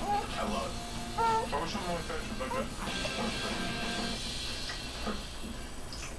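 Voices and background music from a television programme playing in the room.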